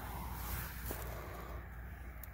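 Faint rustling of a leafy lime prickly-ash (Zanthoxylum fagara) branch being handled, over a steady low rumble, with a couple of faint clicks.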